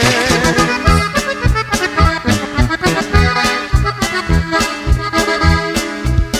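Norteño band instrumental break: an accordion plays the lead melody, with a wavering vibrato at the start, over bass and a steady beat.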